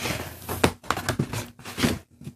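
Handling noise as a plastic Scotch tape dispenser is picked up and moved by hand, with rustling and a few sharp knocks.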